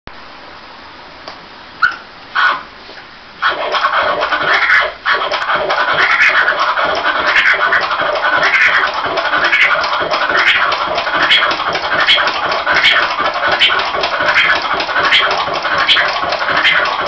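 Vinyl record scratched on a turntable through a DJ mixer, with the crossfader in hamster (reversed) mode for autobahn-style scratches. Two short scratch strokes come about two seconds in, then from about three and a half seconds a continuous run of rhythmic scratches, a rising-and-falling sweep repeating a little under once a second.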